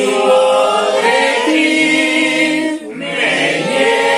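A small congregation singing a hymn together, several voices at once, with a brief dip for breath about three seconds in.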